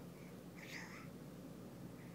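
A baby's single soft, breathy babble, brief and high-pitched, about half a second in.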